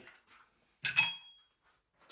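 Two quick hard clinks about a second in, close together, the second with a short ring: the pony cylinder's pinch-clip quick release being handled after it has been unclipped.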